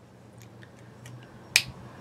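A single sharp click about one and a half seconds in, over quiet room tone with a few faint light ticks before it.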